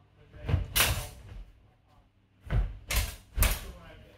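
Sword sparring with a spadroon and a dussack: a run of sharp knocks and thuds as the weapons strike and the fencers close. Two come close together about half a second in, then three more about half a second apart near the end.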